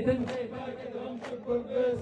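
Men's voices holding a low, steady chanted note between sung lines of a poem, softer in the middle and swelling again near the end.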